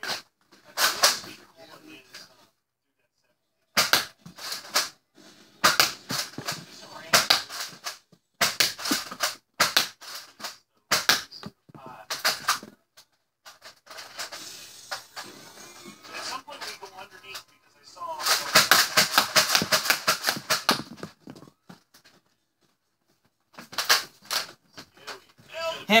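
Nerf Zombie Strike Doominator foam-dart blaster being pumped and fired repeatedly: sharp plastic clacks and dart shots in short clusters with brief pauses between, and darts hitting a wall. A dense run of rapid shots comes about three-quarters of the way through.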